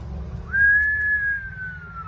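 A person whistles one long note that starts about half a second in, rises a little, then slowly falls in pitch: an admiring whistle.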